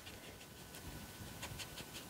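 Near-quiet room with a faint steady hum and a few soft ticks and rustles as a watercolor brush is handled between the palette and the paper.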